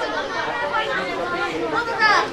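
Speech and chatter, several voices talking.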